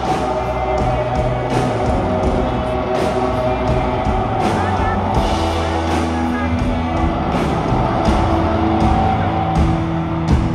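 Live rock band playing: electric guitars holding sustained chords over drums keeping a steady beat with regular cymbal hits.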